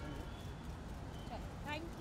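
Background chatter of voices over a steady low noise, with a voice starting to speak shortly before the end.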